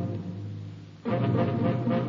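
Radio-drama music bridge closing a scene: low, sustained dramatic chords. One chord fades away and a second one swells in about a second in.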